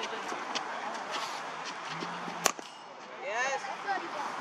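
A single sharp crack of a hard impact about two and a half seconds in, over a background of voices at an outdoor cricket net practice.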